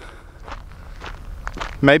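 Footsteps of a person walking on a grassy hillside: faint scattered steps and rustles over a low steady rumble.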